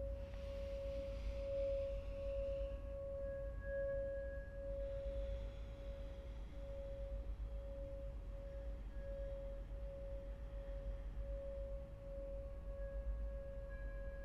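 A single sustained ringing tone, like a singing bowl, held steady with a slight pulsing waver and faint higher overtones, over a low steady rumble.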